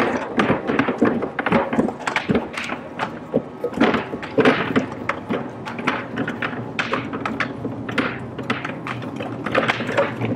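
A rapid, irregular run of knocks and thuds on a stage, several a second, like wooden furniture and bodies striking the floor, with faint music beneath.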